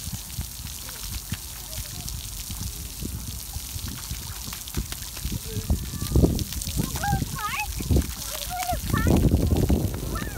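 Splash pad water spraying and trickling on wet concrete, a steady hiss, with children's voices and short high squeals in the background, most of them in the last few seconds.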